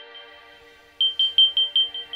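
Morning alarm tone from a bedside smart-home hub: a burst of rapid high beeps, about five a second and fading away, starting about a second in after a short pause that follows the previous burst, over soft sustained background music.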